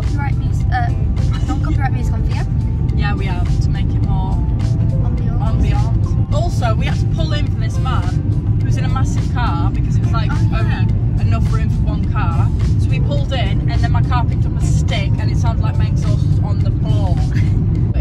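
A song with a singing voice plays over the steady low rumble of road and engine noise inside a moving car.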